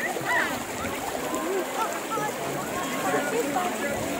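Background chatter of several people talking at once, voices overlapping.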